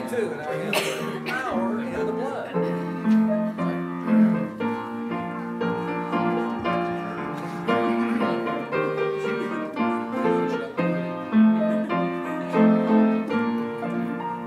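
A choir sings a hymn with piano accompaniment: sustained piano chords change steadily under the voices.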